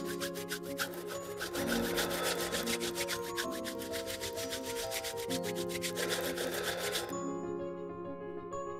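Two bare palms rubbed briskly together, making a quick, even rasping rhythm that stops near the end. Soft sustained background music plays underneath.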